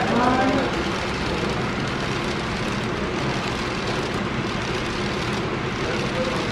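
Model railroad passenger train rolling along the track, a steady even rumble of wheels and motor as the coaches pass. A voice is heard briefly at the start.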